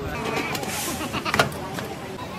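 Busy street background of indistinct voices and traffic, with one sharp knock about one and a half seconds in.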